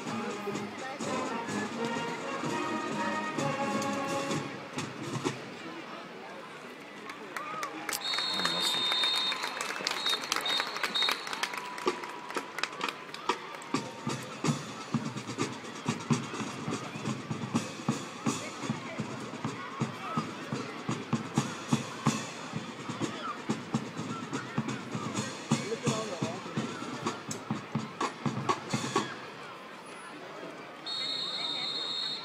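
High school marching band playing, its music ending about five seconds in; then a high steady tone sounds twice, and percussion keeps a steady beat of about two taps a second while the band marches into a line across the field, over crowd chatter in the stands.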